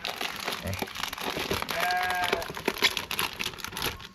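Thin plastic bag crinkling and rustling as it is untied and pulled open by hand.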